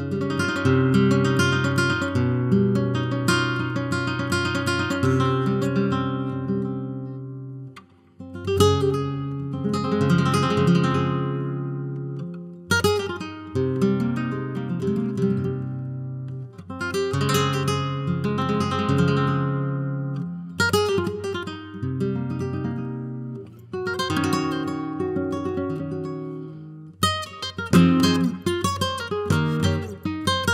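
Solo flamenco guitar playing, with phrases of strummed chords and quick runs that ring out and fade before the next phrase. There is a brief pause about eight seconds in.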